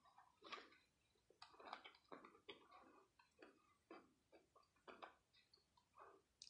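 Faint chewing of a crispy chocolate with crisped-rice balls inside: soft, irregular little crunches and clicks, a couple a second.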